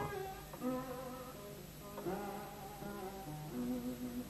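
Slow background music of plucked guitar notes, each note struck and left to ring out.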